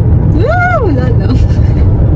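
Road noise inside a moving car's cabin: a loud, steady low rumble. About half a second in, a woman gives one short hum that rises and falls in pitch.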